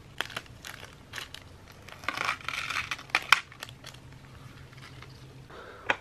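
Crinkling and rustling with scattered light clicks from gloved hands handling skateboard wheels, bearings and their plastic packaging, with a sharper click a little past three seconds in.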